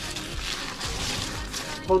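Rustling handling noise as a bag is picked up and opened for the roe, over soft background music.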